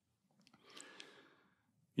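A man's faint breath drawn in at a lectern microphone, about a second long, in the middle of otherwise near silence.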